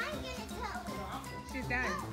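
Children's voices over background music with held notes.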